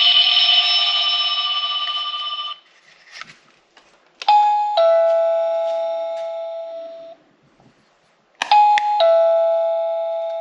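SilverCrest battery-free wireless doorbell receiver chiming. The tail of a longer chime tune cuts off about two and a half seconds in. Then the receiver rings a two-note ding-dong twice, about four seconds apart, each a higher note falling to a lower one that slowly dies away, with a click just before each.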